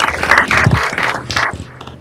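Audience applauding, which dies away near the end.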